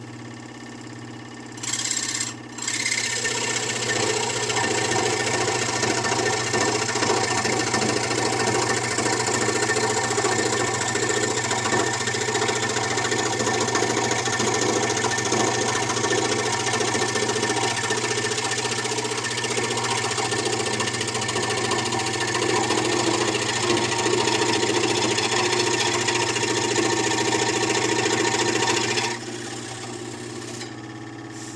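Scroll saw running with a plain skip-tooth blade: the blade starts cutting into a 3/4-inch pine board about two seconds in, breaks off briefly, then cuts steadily until just before the end, when the saw drops back to running free with its motor hum.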